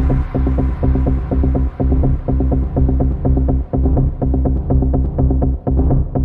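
Techno track from a DJ mix: a heavy, evenly pulsing bass line with its high end fading away, and short ticking hits coming back in near the end.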